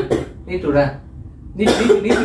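Speech only: a person talking in three short phrases with pauses between them.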